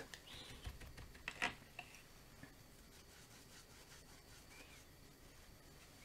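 Faint rubbing of a watercolour brush working paint in a palette, with a couple of light taps in the first two seconds, then near silence.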